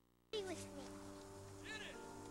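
The sound drops out for a moment at the start, then soft film-score music plays with long held notes. A brief chirp-like call comes near the end.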